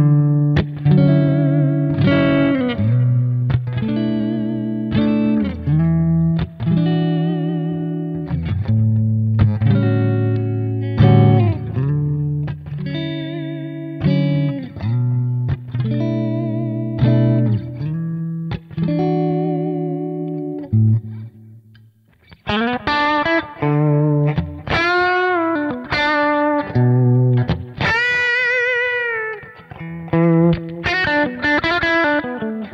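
Electric guitar with Suhr Thornbucker humbuckers played through a Kemper profile of a 1965 blackface Fender Princeton, volume around 6 or 7 and kind of cranked. It plays ringing chords and single-note lines, a brief pause a little over two-thirds through, then higher notes with vibrato.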